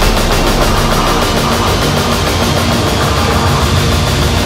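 Loud, dense midtempo electronic music: the full instrumental section of a remix, with a moving bass line under a fast, even pulse in the high end.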